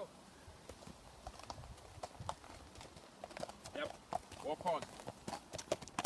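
Horse's hooves clip-clopping on a gravel track, coming closer and growing louder. A voice says "come on" near the end.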